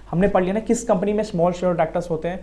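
Speech only: a man talking in a lecture.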